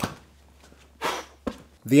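Sharp pops and a short rush of sound as acetylene-laced intake charge ignites in a see-through Wankel rotary engine that fails to start: a sharp pop at the start, a short rush about a second in and another pop shortly after, over a low steady hum.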